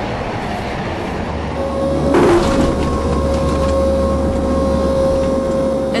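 Aircraft engine drone: a loud steady rumble, with a steady whine that comes in about a second and a half in and holds, and a brief hiss about two seconds in.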